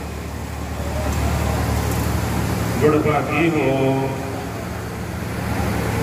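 A man's voice in one phrase of long, held notes about halfway through, over a steady low hum.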